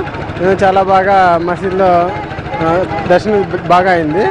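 Speech: a man talking into a handheld microphone, with steady background noise behind the voice.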